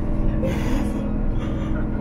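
Two short breathy sounds from a woman into a hand-held microphone, about half a second and a second and a half in, over a steady low drone.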